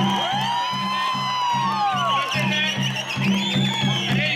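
Live folk music for a Siddi tribal dance: a steady, low pulsing drumbeat with long, high calls that rise and fall over it.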